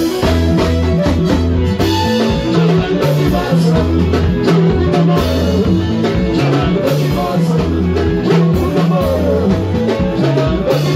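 Live Congolese dance band playing at full volume: electric guitars, bass and drum kit in a steady, driving beat, with a singer over the top on the microphone.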